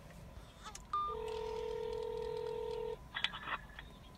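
Phone call ringback tone heard through the phone's speaker: a short higher beep about a second in, then one steady ring about two seconds long, then a few brief clicks near the end as the call connects.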